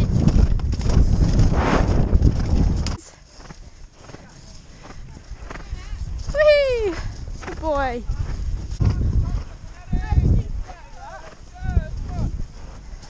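A horse cantering on grass, heard from a rider-mounted camera: heavy wind rumble on the microphone with hoofbeats. This cuts off abruptly about three seconds in. Quieter stretches follow, with a few drawn-out calls that fall in pitch and some wavering pitched calls near the end.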